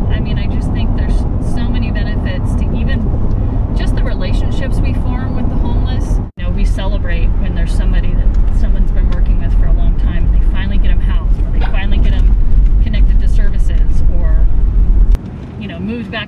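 Indistinct voices over a loud, steady low rumble. About six seconds in the sound cuts abruptly to inside a moving vehicle's cabin, where the low road and engine rumble carries on under the talk, then drops away about a second before the end.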